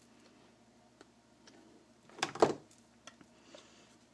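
Quiet handling noise: a few light clicks and one sharper knock about two and a half seconds in, from a hand tool and craft wire being worked against a small cardstock box.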